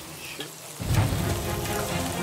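Scallops frying in a pan on a gas burner, with a steady sizzle. Background music with a low bass comes in under it about a second in.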